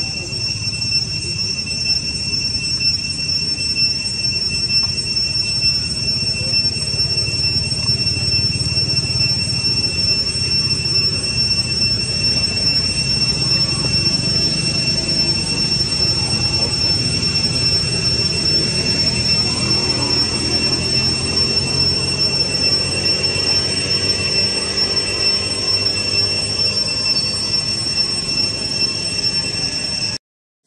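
A steady, high-pitched insect drone, one unbroken whine with a fainter overtone above it, over a low rumbling background.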